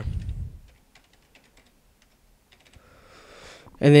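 Computer keyboard typing: a quick run of faint key clicks as a short word is typed.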